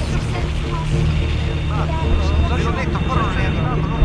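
Steady low drone under faint, garbled, overlapping voices that set in about a second and a half in.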